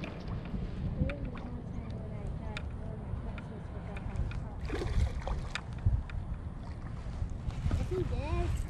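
Wind on the microphone, with scattered faint clicks and rattles from a baitcasting reel being cranked to retrieve line.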